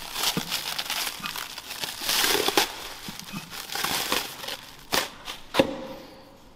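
Black plastic bag wrapping crinkling as it is pulled off a heavy flywheel, with two sharp clicks near the end.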